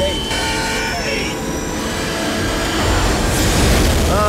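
Movie-soundtrack rush of a car speeding hard through a tunnel: a dense, jet-like roar of engine and wind noise that grows louder toward the end, with a few steady tones laid over it.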